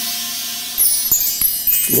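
Bar chimes (a mark tree) swept by hand: a hiss of the rods brushing, then a shimmering run of high metallic tinkles that rings on.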